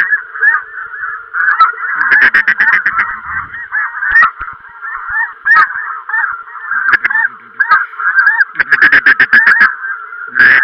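A large flock of snow geese calling overhead in a dense, continuous clamour of high honks. There are louder runs of rapid, closely spaced calls about two seconds in and again near the end.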